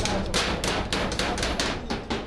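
Rapid hammer blows on a sheet-metal door frame, about five strikes a second.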